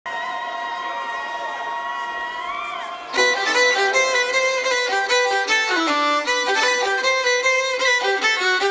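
Fiddle intro: quieter held notes with an upward slide, then about three seconds in a fast, louder melody starts. No bass or drums are playing under it yet.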